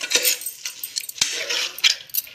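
Steel spoon clicking and scraping against an aluminium pressure cooker as raw mutton is mixed with its spices, with bangles jingling on the cook's wrist. An uneven run of short clinks and scrapes, a few sharper clicks among them.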